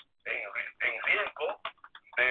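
Speech only: a person talking in quick syllables, with a thin, telephone-like sound.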